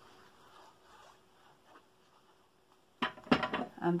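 Near-quiet for about three seconds, then a short flurry of stiff cardstock clicks and taps about three seconds in, the sound of a black card panel being handled and pressed down onto the paper box on a glass cutting mat.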